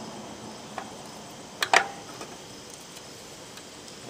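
Two sharp metallic clicks close together about a second and a half in, a hand tool knocking against the metal parts inside an old DC welder, over faint steady insect chirping.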